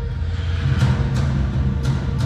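Loud live music played through a large arena's sound system: a heavy, steady bass, with sharp drum hits coming in about a second in.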